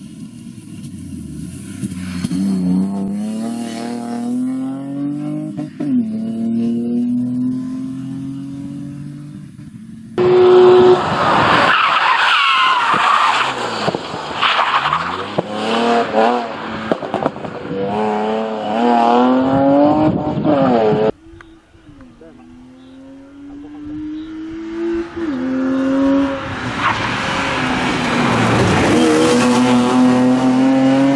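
BMW E36 320i rally car's straight-six engine revving hard. Its pitch climbs through each gear and drops at every upshift, heard over three separate passes, the middle one the loudest and closest.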